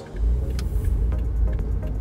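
Car engine and road noise heard from inside the cabin: a low, steady rumble that swells up sharply just after the start.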